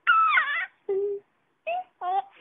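Baby squealing with delight: a long, high squeal whose pitch slides up and down, followed by two shorter, lower coos.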